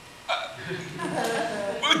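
A woman's staged sobbing: a sharp catch of breath, then wavering cries of grief.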